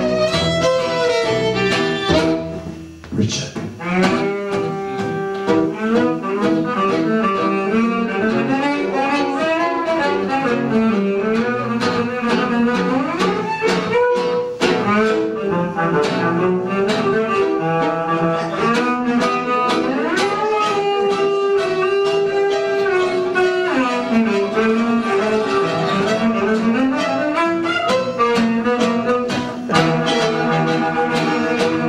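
Tango music played on bowed string instruments, with a melody that slides up and down over a low bowed line. There is a brief break about three seconds in.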